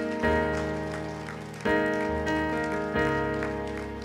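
Keyboard playing soft sustained chords, a new chord struck three times about every second and a half, each one fading away.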